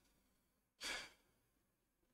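A man's single short breath, a sigh-like exhale, about a second in, otherwise near silence.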